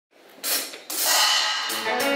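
A live band starts to play: a high, hissy percussion wash comes in about a second in, and pitched instrument notes enter near the end.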